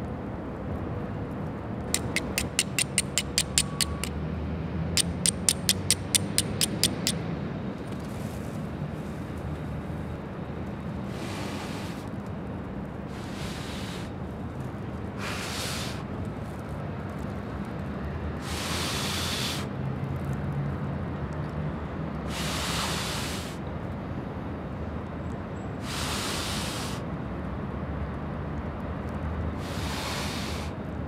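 A flint struck rapidly against a steel striker: two runs of sharp clicks, about five strikes a second for roughly two seconds each. Then a series of breaths blown onto smouldering char cloth and kindling to bring it to flame, about seven blows of roughly a second each, a few seconds apart.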